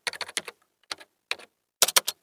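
Computer keyboard typing: a quick run of keystrokes, then slower, spaced keystrokes and a short flurry near the end.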